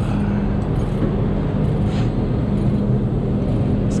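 Steady low rumble of an idling diesel engine, with a short sharp click near the end.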